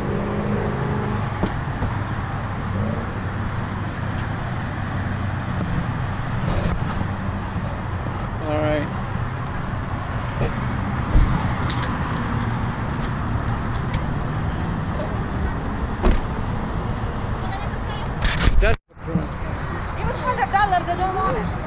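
Steady traffic noise from a nearby freeway, a continuous low rumble and hiss, broken by a few short knocks.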